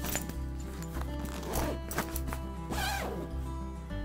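The zipper of a fabric duffel bag being pulled closed in two strokes, over background music.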